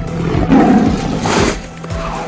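Background music with a steady beat. Over it, a loud, rough catlike roar enters about half a second in and ends in a brief hiss around a second and a half.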